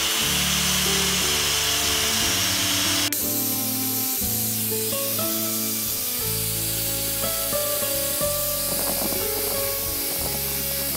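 Background music with held notes. Over the first three seconds an angle grinder with a sanding disc hisses as it sands the hardwood tray, then cuts off abruptly about three seconds in.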